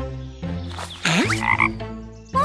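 Cartoon background music with a sound effect about a second in: a steep pitch glide that falls and rises again, followed by a short buzzing sound.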